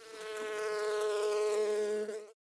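Buzzing bee sound effect for a cartoon bee flying in: one steady, high buzz that swells in over the first half-second and then holds, wavering slightly.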